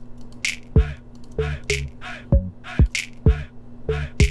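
A minimal club-style hip-hop beat playing back from FL Studio: punchy kick drums and snap/clap hits over a short-note Serum synth bass line, in a steady repeating pattern.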